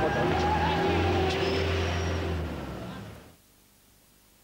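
A car engine running close by, with voices in the background. The sound fades out a little over three seconds in, leaving near silence.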